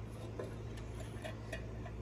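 Long-neck utility lighter being clicked down inside a metal bee smoker: faint, short ticks, about two or three a second, as it is worked to light the fuel.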